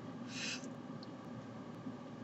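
Quiet room tone, a faint steady hum, with one short breathy hiss about half a second in.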